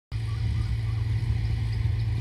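Wind buffeting the microphone: a steady low rumble with little sound above it.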